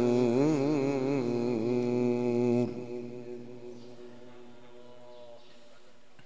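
A male Quran reciter's voice in melodic tajwid recitation, holding a long ornamented note with rapid wavering turns that breaks off about two and a half seconds in. A fainter steady trailing tone follows and dies away about five seconds in.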